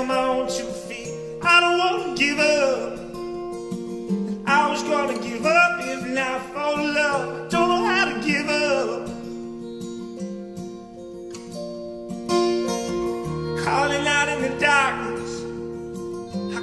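A man singing a slow folk song with long, sliding held notes, accompanying himself on a strummed acoustic guitar. About ten seconds in the voice drops out for a few seconds while the guitar plays on alone, then the singing comes back.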